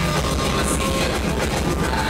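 Loud live band music with drums and bass and a steady beat.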